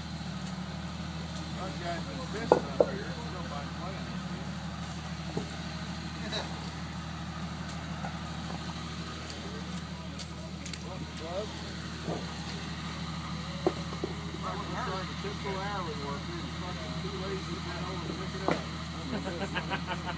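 Off-road vehicle engine idling steadily, with two sharp knocks about two and a half seconds in.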